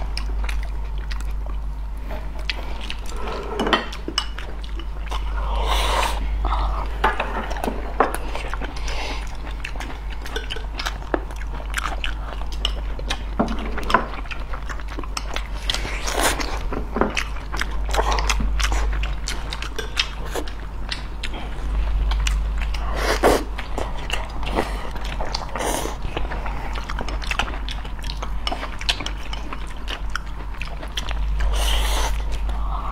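Close-miked eating sounds: chewing and biting, with frequent short sharp clicks scattered throughout, over a steady low hum.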